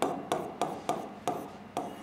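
A pen tapping and scraping on the glass of an interactive touchscreen board as words are written by hand, with short clicks about three times a second.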